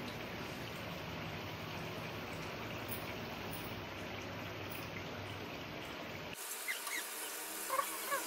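Butter sizzling as it melts in a hot aluminium pot, a steady hiss. About six seconds in, the sound changes abruptly to a thinner, higher hiss with a few short chirps.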